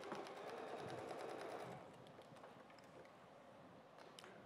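Electric sewing machine stitching a short quarter-inch seam through fabric. It runs steadily for under two seconds, then stops.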